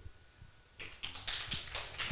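Scattered hand claps starting about a second in, a few people beginning to applaud at the end of a poetry reading.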